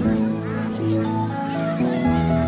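Background music with sustained notes, with geese honking a few times over it.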